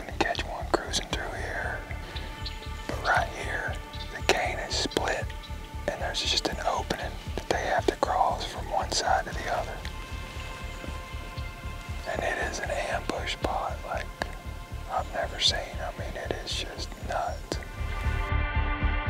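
Whispered speech over background music with a steady low pulse.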